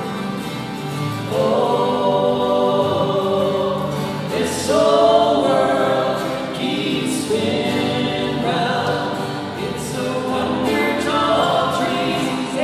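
A folk song sung by several voices together, accompanied by two strummed acoustic guitars and an electric guitar, with the long reverberation of a stone building.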